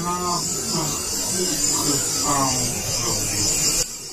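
Spinning reel's drag buzzing steadily as a hooked rainbow trout runs and takes line, cutting off abruptly near the end. A soft voice runs under it.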